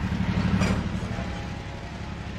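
Diesel locomotive engine running with a steady, low, pulsing rumble.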